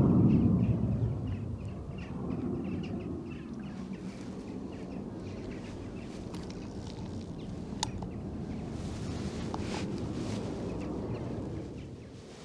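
Rumble of a display aircraft overhead, loud at first and dying down over the first couple of seconds, then a steady low distant rumble under wind noise.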